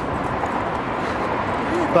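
Steady hiss of freeway traffic passing below, with wind on the microphone.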